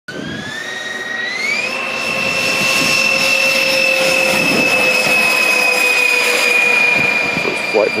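Jet turbine of a T-38 Talon scale model jet spooling up for takeoff: a high whine climbs in pitch over the first two seconds, then holds nearly steady as the jet rolls down the runway.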